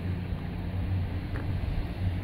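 A steady low mechanical hum, one unchanging low-pitched drone, over outdoor background noise.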